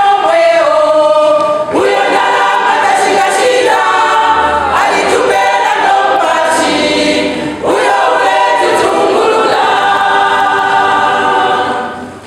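A women's church choir singing a gospel song together in harmony, in long phrases with short breaks between them. The singing drops away at the end.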